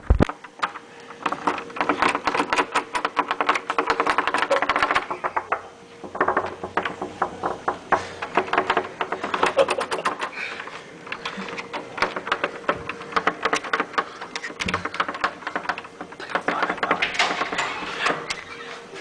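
Doorknob and latch of a penny-locked door rattling in rapid, uneven bursts of metal clicks as the door is jerked from the inside but will not open.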